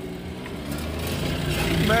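Small car's engine heard from inside the cabin, pulling away in first gear under light throttle, its hum growing steadily louder.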